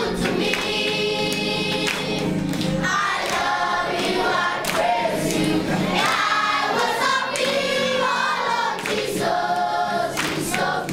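A choir singing a Christian song.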